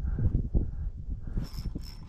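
Fishing reel being cranked to bring in a hooked fish, the reel's gears making an uneven mechanical rubbing and clicking, with a brighter hiss in the second half.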